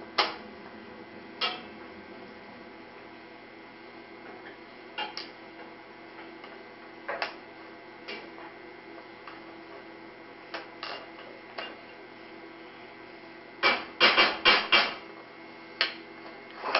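Wooden puzzle pieces clicking and knocking against a wooden inset puzzle board as they are handled and fitted into place: scattered single knocks, then a quick run of several louder knocks about two seconds before the end. A steady low hum runs underneath.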